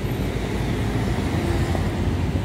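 A loud, steady low rumble with a hiss above it: outdoor background noise with no distinct events standing out.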